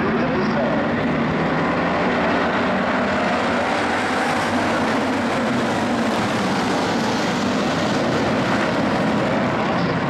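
A pack of IMCA Hobby Stock race cars' V8 engines running together at pace speed as the field circles in formation, a steady dense engine sound with no breaks.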